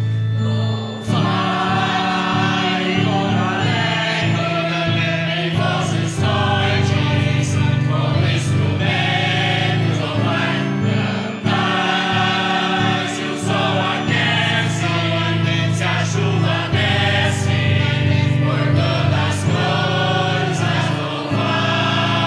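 A church choir singing a hymn over sustained instrumental accompaniment, the voices coming in about a second in.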